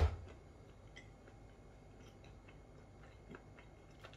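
Quiet, sparse small clicks of crunchy chocolate with crisped rice and peanuts being chewed with the mouth closed, after one sharp click right at the start.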